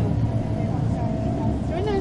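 Steady low drone of a bus's engine and road noise, heard from inside the moving bus. A voice starts near the end.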